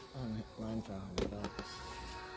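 A voice in the background of a shop, not close to the microphone, with a sharp click about a second in as framed pictures in a shopping cart knock together while being flipped through.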